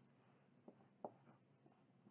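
Dry-erase marker writing on a whiteboard, very faint, with two light taps of the tip around the middle.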